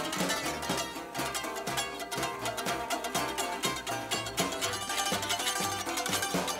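Live acoustic string band playing an instrumental passage: plucked strings with an upright bass keeping steady, even bass notes.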